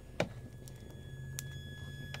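Steady high-pitched whine from a toroidal transformer pulsed at about 1.6 kHz, the tone of the pulse rate, over a low hum. A click comes just after the start, and a second, higher tone joins about one and a half seconds in.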